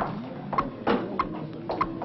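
WB400 carrier/receiver loudspeaker ticking steadily, a short click about every 0.6 s: the carrier tick that shows the warning line is live. There is a louder dull knock just under a second in.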